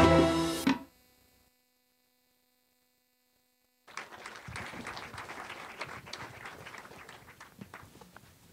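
Film soundtrack music cuts off abruptly under a second in, followed by about three seconds of silence. Then audience applause starts and fades away.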